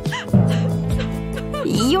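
A woman crying in loud, wavering sobs and wails over light background music.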